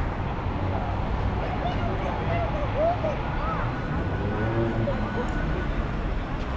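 Street ambience: a steady low rumble of passing traffic, with snatches of passers-by talking.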